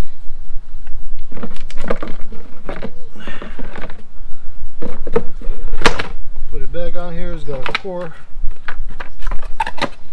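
Short clicks and knocks of parts being handled, with a person's voice speaking briefly a little after the middle, over a steady low rumble.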